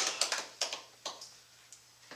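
The last scattered hand claps of a small group's applause, thinning out within the first second, with one stray clap about a second in.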